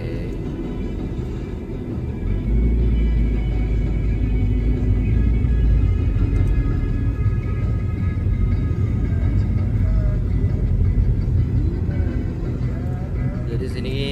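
Low road rumble from inside a slowly moving car, with background music playing over it. The rumble grows louder a couple of seconds in.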